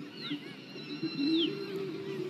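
Two high, arching bird calls, the second longer, over a low wavering background din.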